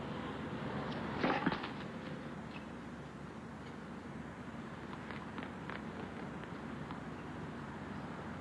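Steady murmur of an arena crowd between points in a televised tennis match, with a brief louder noise about a second in and a few faint ticks around five seconds in.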